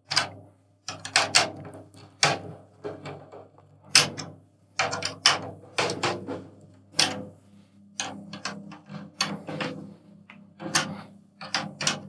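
Drum keys turning the tension rods of a snare drum a quarter turn at a time to tighten the top head: a run of irregular metal clicks and creaks as each rod is turned.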